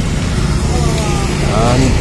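A steady low rumble under a short pause in a man's speech, with faint, quieter talk in the pause.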